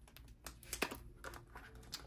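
Light clicks and taps of hands handling a ring-bound budget binder and its clear plastic envelope pockets: a handful of separate sharp ticks, fairly quiet.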